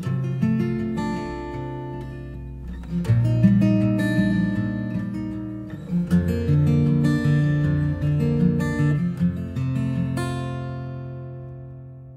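Acoustic guitar strumming chords in the song's instrumental ending, with a last chord struck about ten seconds in that rings on and fades away.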